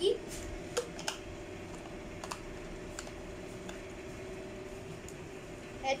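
A few light, separate plastic clicks and taps, mostly in the first three seconds, as small plastic parts of a toy gel-ball blaster kit are handled and fitted together, over a steady low hum.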